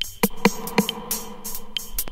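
1990s trance-techno from a vinyl DJ mix: a steady, buzzy synthesizer tone held under crisp hi-hat strokes about three times a second, with no kick drum.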